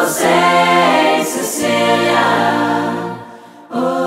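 A cappella choir singing held chords in close harmony, voices only with no instruments. The chord fades away about three seconds in and the voices come back in half a second later.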